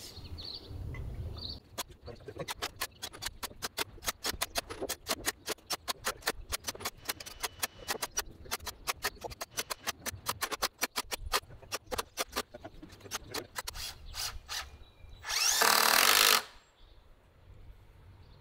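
Cordless drill driving 2.5-inch #10 self-tapping screws into pressure-treated pine decking boards: a long run of rapid clicking, then near the end one loud burst of about a second as the drill runs a screw in.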